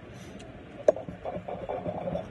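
Steak knife sawing through a crisp waffle on a plate, with one sharp click about a second in.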